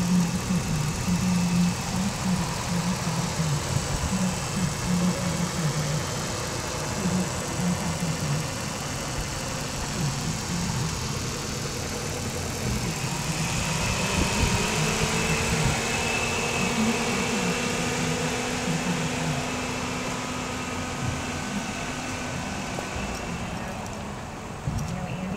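2008 Jeep Commander's engine idling with the hood open, a steady low rumble. A faint higher whine joins in about halfway through.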